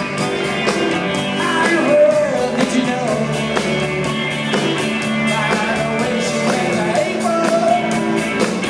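Live rock band playing an instrumental passage: an electric guitar lead bending between notes over sustained chords and a steady drum beat with regular cymbal hits. Recorded from within the audience.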